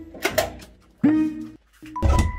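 Two quick metallic clicks from a steel front door's lock being turned shut, followed by a single held note of light background music.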